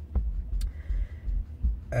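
Uneven low rumble inside a car, with two faint clicks in the first second.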